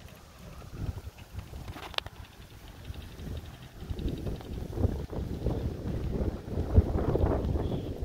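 Wind buffeting the microphone: an irregular low noise that grows louder through the second half, with one sharp click about two seconds in.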